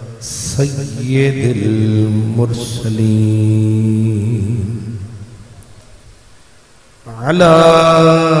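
A man chanting a melodic Islamic invocation in long, drawn-out held notes. The phrase dies away in the middle, and a new loud held note starts about seven seconds in.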